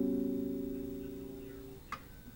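A chord plucked on a lute, ringing and fading slowly, then damped to silence near the end with a faint click.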